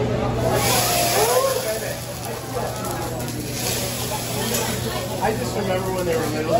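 Hot teppanyaki griddle hissing and sizzling as liquid is squirted onto it from a squeeze bottle. The hiss starts about half a second in and dies down over the next second or two, with voices of children and adults around the table.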